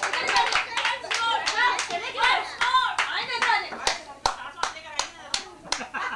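Hands clapping in a steady rhythm, about three to four claps a second, with several voices over the first half. The clapping stops shortly before the end.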